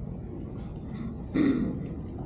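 A person clearing their throat once, briefly, about one and a half seconds in, over a low steady rumble from a large room.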